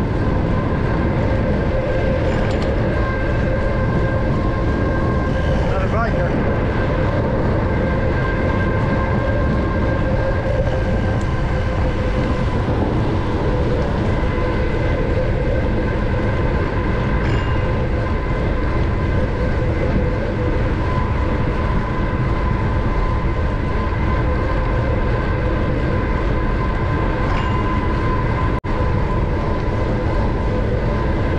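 Steady wind rush on a bicycle-mounted action camera's microphone while riding along a road, with a constant hum from the bike's rolling tyres underneath; a brief dip comes near the end.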